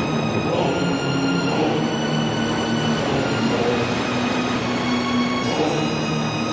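Stoner/doom rock music: a dense, steady instrumental passage of held notes at full volume, with no singing.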